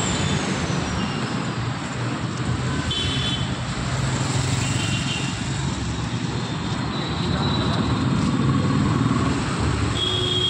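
Road traffic passing on a busy city street: a steady rumble of car and scooter engines and tyres. A few brief high-pitched tones come about three and five seconds in.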